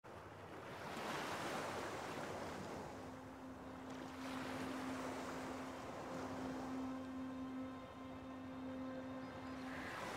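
Small waves washing onto a sandy beach, the surf swelling and falling back every few seconds. A faint steady hum joins about three seconds in.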